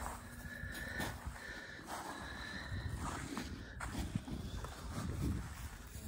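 Wind rumbling on the microphone outdoors, with a few faint footsteps on frosty ground.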